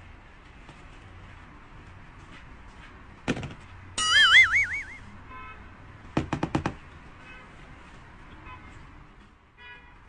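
Added comedy sound effects: a knock about three seconds in, then a loud warbling tone that wobbles up and down in pitch for about a second, followed by a quick run of four clicks.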